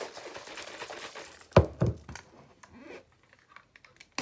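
A plastic shaker bottle being shaken hard to mix a protein drink, a fast busy rattle, then two sharp knocks about a second and a half in as plastic containers are set down on a table, followed by a few faint handling clicks.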